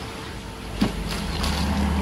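A sharp click a little under a second in, then a low, steady machine hum that sets in about halfway through.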